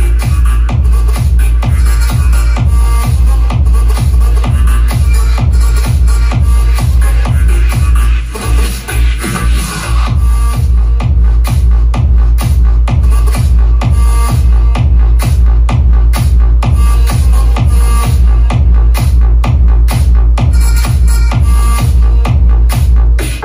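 Electronic dance music played loud through a karaoke/event speaker system: a pair of WeeWorld S1500 subwoofers with 40 cm drivers and a pair of 25 cm full-range speakers, driven by a QA1600 four-channel class-D amplifier. A heavy kick drum pounds about twice a second, and the bass drops out briefly near the middle before the beat comes back.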